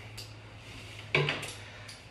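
A Shark upright vacuum's plastic parts being handled, with one sharp knock about a second in. The vacuum is not running.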